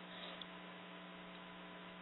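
Faint steady electrical hum with a low hiss: the background line noise of the recording, with no other sound.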